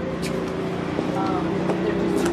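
Street noise: a steady low engine hum, with voices talking in the background.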